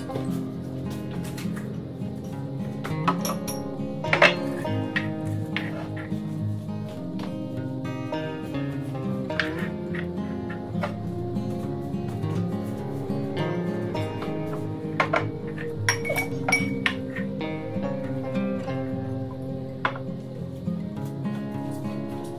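Background music led by acoustic guitar, with light clinks and knocks of small hard objects scattered through it. The sharpest clink comes about four seconds in.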